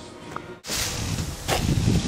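Faint background music, then an abrupt cut to a steady outdoor hiss, with a sharp click about one and a half seconds in.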